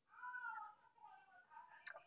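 A faint, short pitched call that rises and falls over about half a second, meow-like in shape, then near silence.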